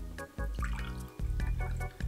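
Background music with a repeating bass line. Under it, a faint trickle of a cocktail being poured from a metal shaker through a strainer into a glass.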